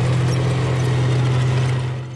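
Battle tank driving over dirt: its engine running with a steady low drone under the clatter of its steel tracks.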